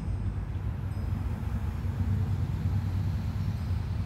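Hard cider being poured from a glass bottle into a glass and foaming up, over a steady low rumble.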